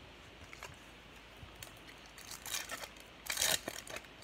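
Baseball card pack wrapper being handled and torn open, crinkling in quick crackles. It is faint at first, and the crinkling starts about halfway in and gets louder near the end.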